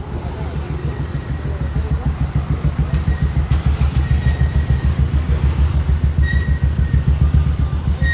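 A car's engine running right beside the microphone, a low pulsing rumble that grows steadily louder, with a few faint short high tones in the background from about three seconds in.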